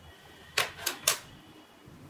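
Metal needles clicking against each other three times in quick succession, as knitted stitches are slipped from the knitting needle onto a threaded sewing needle.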